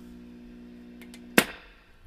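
Tube guitar amplifier humming steadily through its speaker, the hum picked up through a capacitor clipped across its input. A single sharp pop comes about one and a half seconds in, and the hum stops with it.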